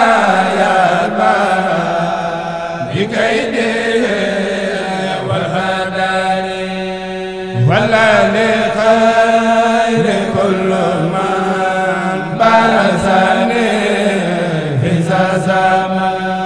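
Men's voices chanting an Arabic khassida, a Mouride Sufi religious poem, in long drawn-out melodic phrases, with a fresh phrase rising in every four seconds or so. A steady low note is held underneath.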